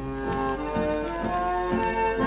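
A tango played by a dance orchestra, coming from a 78 rpm Odeon shellac record, with a sustained melody over a steady rhythmic accompaniment.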